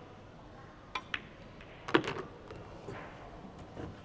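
Pool shot: two sharp clicks in quick succession about a second in, as the cue tip strikes the cue ball and the cue ball hits an object ball. A louder knock follows about two seconds in, then softer knocks of balls on the table.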